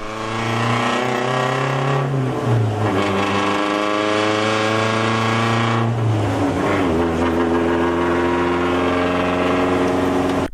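Rally car engine revving hard as the car accelerates. Its pitch steps down and builds again about two seconds in and about six seconds in, as at gear changes.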